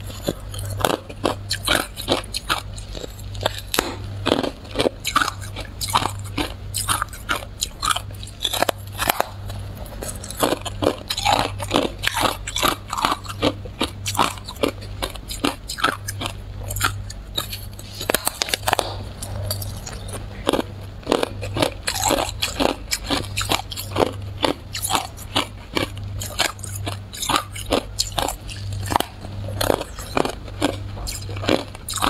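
A person biting and chewing a round disc of frozen ice: a dense, irregular run of sharp cracks and crunches, with a steady low hum underneath.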